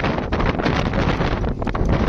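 Wind buffeting a phone's microphone: a loud, uneven rush of noise, heaviest in the low end, with quick gusty spikes.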